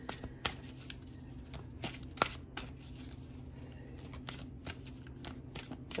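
An oracle card deck being shuffled by hand: faint, irregular card riffles and taps, with one sharper click a little after two seconds in.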